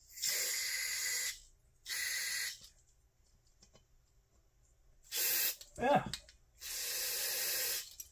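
Aerosol carburetor cleaner sprayed through a straw into the passages of an outboard motor's carburetor in four bursts. The first and last bursts last about a second or more, the middle two are shorter.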